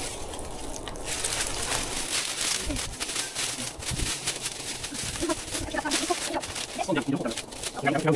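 Dry, dead plant stalks rustling and crackling as they are pulled out of a garden bed and gathered up by hand.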